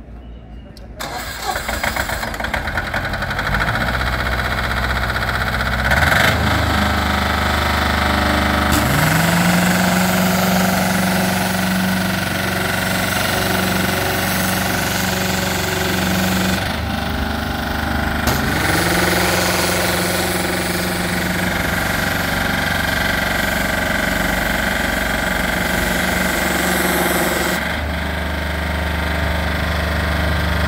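The 22 hp diesel engine of a trailer-mounted 350-bar pressure washer starts about a second in and runs steadily, with a hissing high-pressure water jet over it. The engine note rises twice, around a quarter and around two thirds of the way through, as the washer is run up under load.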